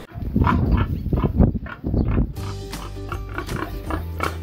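Domestic pig grunting: a run of short, irregular grunts in the first two seconds or so, fewer after that, over background music.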